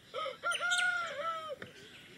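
Rooster crowing once: a short note, then a long held note that falls away about a second and a half in.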